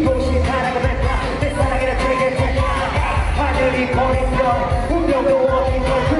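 Live amplified hip-hop/pop music from a concert stage: a backing track with a heavy bass beat and vocals over it, recorded from the audience.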